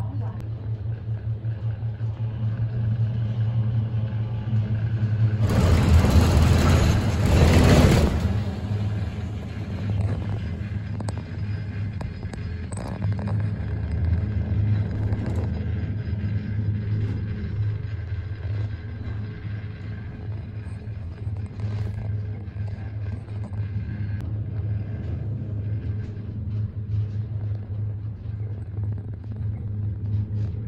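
Gondola lift cabin riding up its cable with a steady low hum. About six seconds in, a louder rushing rumble lasts a little over two seconds, typical of the cabin rolling over a pylon.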